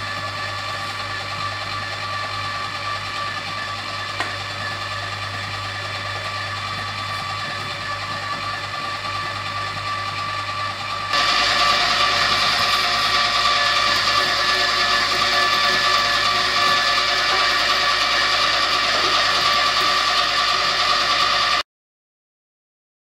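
Electric meat mincer running steadily as a faggot mixture of offal and rusk is pushed through its plate for a second mincing: a steady motor hum and whine. About halfway through it gets louder, and it cuts off suddenly just before the end.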